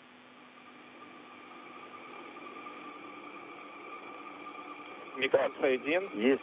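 Steady hiss of a narrow-band radio voice channel, with a faint steady hum under it, slowly growing louder. A voice comes in near the end.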